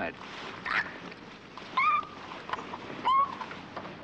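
A woman's short, high-pitched squeals of protest, three of them about a second apart, each rising in pitch, muffled by a hand held over her mouth and nose as she is forced to take a pill.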